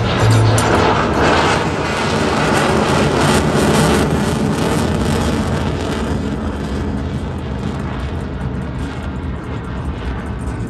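F-16 fighter jet's single turbofan engine, a loud rushing noise as it flies past, strongest in the first four seconds and slowly fading as it climbs away, with music playing underneath.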